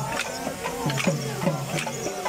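A hand drum beating a steady dance rhythm of about three strokes a second, each low stroke dropping in pitch, with sharp clacks of the dancers' kalikambu wooden sticks struck together.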